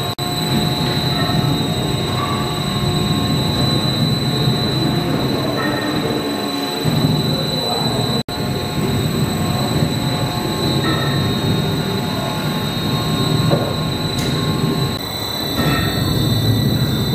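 Cross-compound mill steam engine running steadily: a continuous, dense mechanical running noise from the engine and its drive gearing, with a faint steady whine above it.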